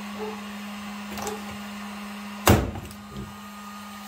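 Hand pop-rivet gun squeezed on a fiberglass valence, the rivet's mandrel snapping off with one sharp crack about two and a half seconds in, over a steady low hum.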